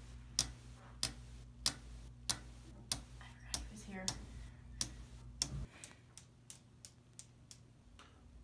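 Clock ticking, about one and a half ticks a second. A little past halfway the ticks turn quicker and fainter, about four a second, and a low hum underneath cuts out.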